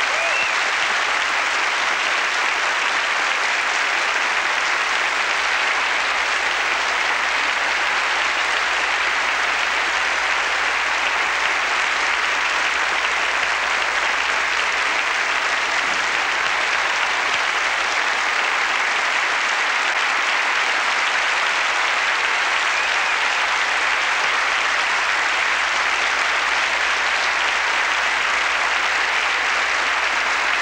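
Theatre audience applauding steadily and densely, without let-up.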